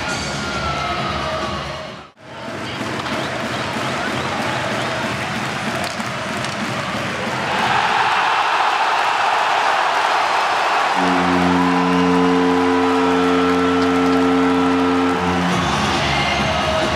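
Ice hockey arena crowd cheering a home goal, swelling about seven seconds in. Near the end a steady goal horn sounds over the cheering for about four seconds.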